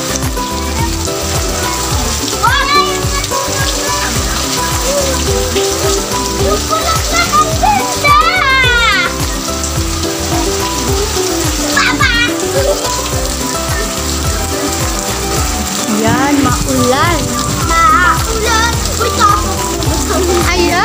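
Steady rain falling, heard as an even hiss, under background music, with children's voices calling out now and then.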